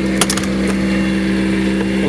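Motorhome entry door latch clicking as the door is pulled open, with a couple of sharp clicks about a quarter second in and another shortly after. A steady mechanical hum runs underneath throughout.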